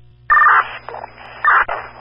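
Two short, shrill electronic data bursts on a fire radio channel as two-way radios are keyed: one loud burst near the start and another about a second later, with radio static between.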